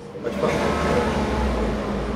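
Low engine rumble of a motor vehicle, coming in suddenly about a third of a second in and staying loud.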